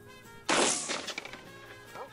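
A single shotgun slug shot about half a second in: a sharp crack that dies away over about half a second as the slug hits the target. Faint background music runs underneath.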